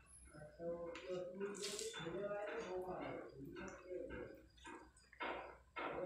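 Soft, wet squishing of cooked rice and fried jute leaves being mixed by hand on a plate. An indistinct voice without clear words runs through the first half.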